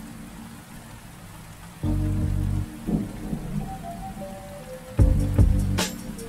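Steady rain falling on a puddle, with calm music over it: low sustained notes come in about two seconds in and again near the end, and a sharp crack sounds just before the end.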